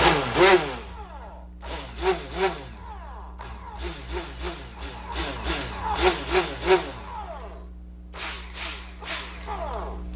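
Handheld stick blender running in thick lotion, its motor pitch rising and falling as it churns, cutting out briefly three times. The lotion is thickening as the oil-and-water emulsion sets.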